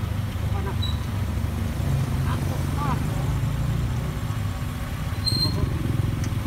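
Steady low rumble of wind and road noise on a microphone riding along on a moving bicycle, with faint voices of other riders. A short high beep comes about five seconds in.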